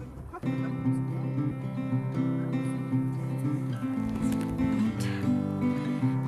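Background music: acoustic guitar strummed and plucked.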